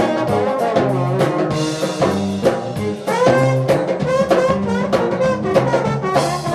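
Live New Orleans brass-band jazz led by trombones, two horns playing together over a drum kit, with a low bass line underneath.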